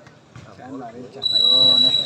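Referee's whistle blown once, a steady shrill blast of about a second starting a little past halfway, signalling the serve in a volleyball match. Voices of players and spectators call out around it.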